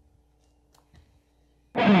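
Near silence with a faint click about a second in, then a rock band starts playing suddenly near the end, loud, with electric guitar and bass.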